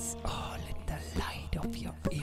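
Soft breathy whispering in short irregular puffs, over the faint ringing of a guitar chord dying away.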